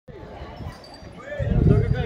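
Faint voices of people talking, then about one and a half seconds in a much louder low rumbling, buffeting noise sets in over them.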